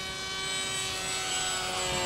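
The 2400 kV brushless electric motor and 6x5.5 propeller of a foam-board RC plane, whining steadily with several pitches at once as it flies by, growing slowly louder as it nears.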